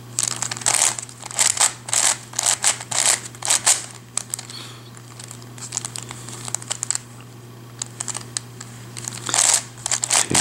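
WitEden 3x3 Mixup Plus plastic puzzle cube being turned by hand: quick clicking and clacking of its layers, busy for the first few seconds, sparser in the middle and picking up again near the end.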